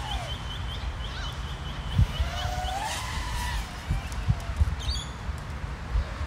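Birds calling: a quick run of high chirps in the first two seconds, then gliding whistled notes, and a short high call near the end. Underneath is a steady low wind rumble on the microphone with a few soft bumps.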